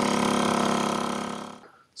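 A small engine held at high revs: a steady buzzing note that fades away after about a second and a half.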